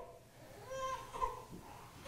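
A pause that is mostly quiet room tone, with a brief faint high-pitched vocal sound, like a small child's, a little under a second in.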